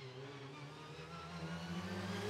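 Opel Adam rally car's engine running hard as it approaches at speed, growing steadily louder, its pitch edging up.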